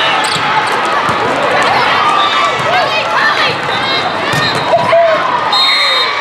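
Indoor volleyball rally: a few sharp ball hits and players moving on the court over a steady din of many shouting voices from players and spectators in a large hall.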